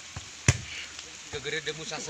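A single sharp slap of a hand striking a volleyball about half a second in, followed by players calling out.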